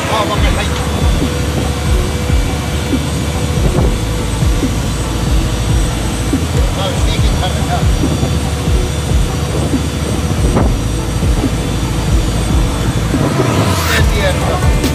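Fishing boat's engine running steadily at sea.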